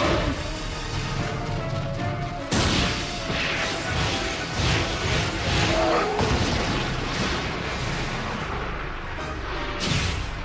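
Cartoon fight sound effects over dramatic background music: a sudden loud crash about two and a half seconds in, followed by a string of heavy impacts and crumbling rubble, with more sharp hits near the end.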